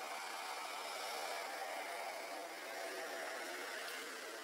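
Steady outdoor background hiss, with no distinct call or event.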